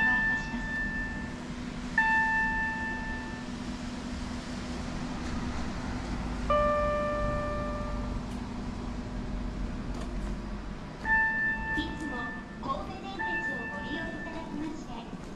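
Electronic chime tones in a railway station concourse near the ticket gates, sounding about five times with sharp starts and a short ring each; the one in the middle is lower-pitched. A steady low hum runs underneath.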